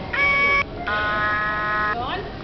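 Plush Christmas frog toy's sound chip playing two buzzy electronic notes: a short higher one, a brief gap, then a longer lower one.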